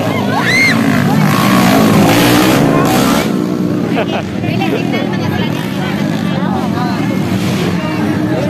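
Underbone motorcycle engines racing on a motocross track, loudest about two to three seconds in, with people in the crowd talking and shouting over them.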